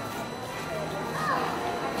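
Background music with faint voices of people nearby.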